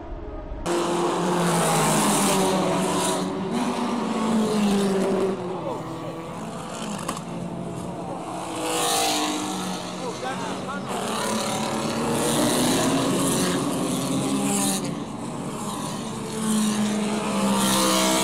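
Racing car engines revving and passing, rising and falling in pitch in several waves, with voices around them.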